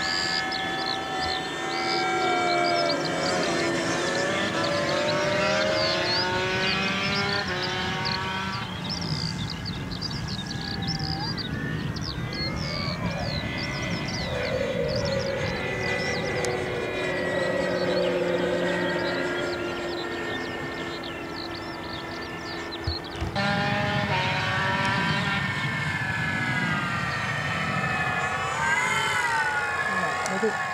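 Radio-controlled aerobatic propeller plane flying overhead, its motor and propeller note rising and falling in pitch as it manoeuvres and passes by.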